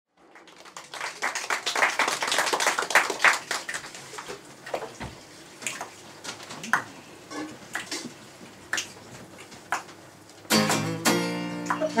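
Live acoustic band music: acoustic guitar strumming busily at first, thinning to sparse strokes and small percussion taps, then about ten and a half seconds in the band comes in with held chords from the reed instruments.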